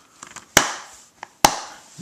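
Plastic DVD case being handled and snapped shut: two sharp clicks about a second apart.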